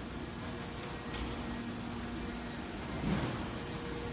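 Steady background hum of a factory floor: a constant low tone over even noise, with a small swell about three seconds in.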